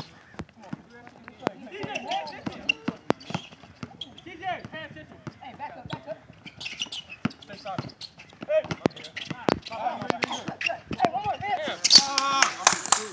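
A basketball dribbled on an outdoor hard court, the bounces coming irregularly, among players' voices and shouts that grow louder near the end.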